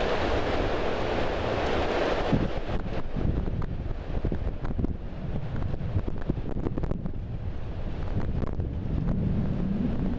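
Wind buffeting the microphone with a steady low rumble. A gust of rushing noise fills the first couple of seconds, then eases into scattered small clicks and rustles.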